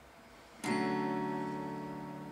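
A single chord strummed on an acoustic guitar about half a second in, left to ring and slowly fading; faint room hiss before it.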